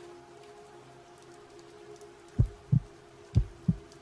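Heartbeat sound effect: two double thumps, low and loud, in the second half, over a steady low drone and a faint hiss. Everything cuts off abruptly at the end.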